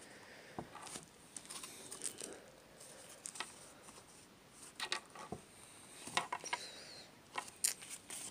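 Faint, scattered light taps and rustles of trading cards and card decks being handled and set down on a table.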